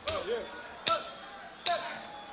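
Drumsticks clicked together to count in a reggae band: sharp, evenly spaced clicks a little under a second apart, three of them, with a voice calling between them.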